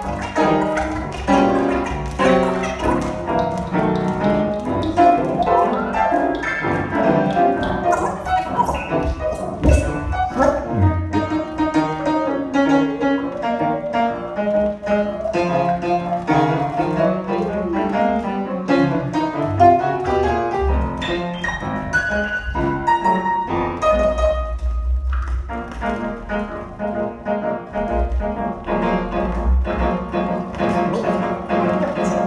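Free-improvised live music with piano among a dense mix of pitched sounds, notes changing constantly and some tones gliding up and down partway through.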